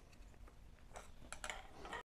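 Faint clicks and light rattling of plastic parts as a gel blaster's body shell is lifted off its gearbox, with a few small clicks in the second half.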